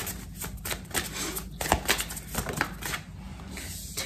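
A tarot deck being shuffled by hand: an irregular run of quick card snaps and clicks that thins out near the end.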